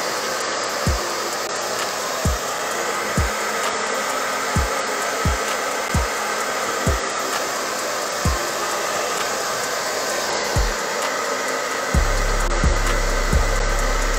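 Handheld hair dryer blowing steadily, aimed at the hairline of a lace wig to dry the adhesive and skin protect. A bass beat of background music thumps underneath.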